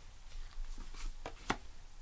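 Soft clicks and slides of tarot cards being handled and drawn from a deck, with a few short taps, the sharpest about one and a half seconds in.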